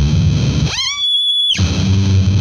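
Electric bass played through fuzz pedals: heavy, distorted low notes, cut off about three-quarters of a second in by a high squeal that sweeps upward, holds steady for just under a second, then gives way to the fuzzed bass again.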